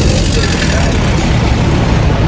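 Street traffic with a large vehicle's engine running close by: a steady low rumble.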